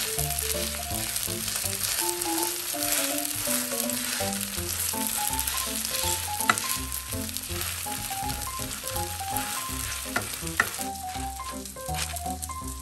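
Cabbage-and-batter pancakes sizzling steadily in hot oil in a nonstick egg pan. A wooden spatula presses on them, with a few sharp clicks against the pan about halfway through and again near the end.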